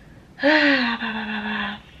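A woman's voiced sigh, starting about half a second in, falling in pitch and then holding for about a second and a half.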